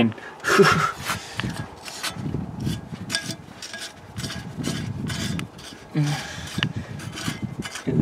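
Gloved hand unscrewing the rusty wing nut on a car's air cleaner lid: a run of rough scraping and grating as the corroded nut turns on its threaded stud and the glove rubs the lid.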